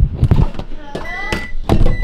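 A few sharp knocks and thumps from handling, with a brief vocal sound just before a second in; from about a second in a steady high electronic tone, like an appliance beep, holds on.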